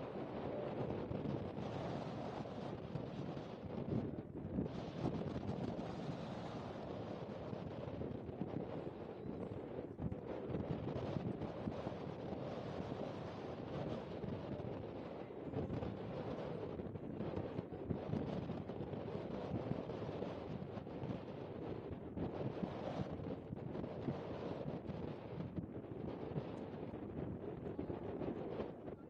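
Wind blowing across an outdoor microphone: a steady rushing noise that rises and falls in gusts.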